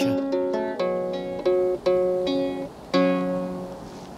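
Small wooden lyre plucked by hand, playing a slow melody of about eight single notes. Each note rings on and fades, and the last dies away near the end.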